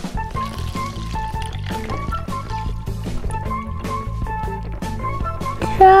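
Background music throughout, with water pouring from a metal pitcher into a plastic cup beneath it.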